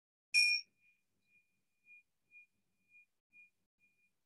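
A bell struck once, about a third of a second in, that keeps ringing in a single high tone, pulsing about twice a second as it slowly fades. It is the bell that opens a moment of silence for meditation.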